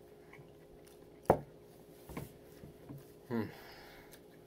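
A drinking glass set down on a wooden table: one sharp knock about a second in, then a softer knock about a second later, over a faint steady room hum.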